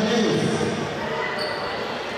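A man's voice echoing in a large sports hall, breaking off about half a second in, followed by the hall's even background noise with a faint, brief high beep about one and a half seconds in.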